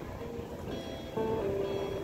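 Acoustic guitar played softly in a pause between sung lines, with a few held notes and a new chord coming in about a second in, over a faint low background haze.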